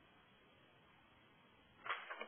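Near silence: faint steady hiss of a narrow-band audio line, with a short burst of a man's voice just before the end.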